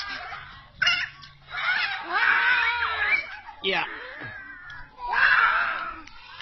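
Young children's voices shouting and squealing in high-pitched bursts, several times.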